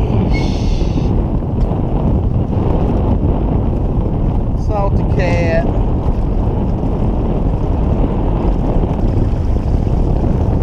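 Strong wind buffeting the microphone on an open boat, a steady loud rumble. Two brief high, wavering sounds come through it, one near the start and one about halfway through.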